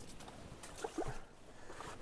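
Quiet water and handling noise as a burbot is slipped back down a hole in the ice, with a few soft clicks.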